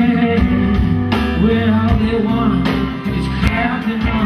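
Live rock band playing with electric and acoustic guitars, bass, drums and keyboard over a steady drum beat, with a male voice singing.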